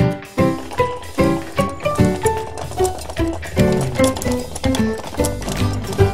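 Background music: a melody of pitched notes over a steady beat.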